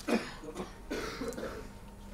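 A person's short cough right at the start, followed by a few fainter scattered sounds.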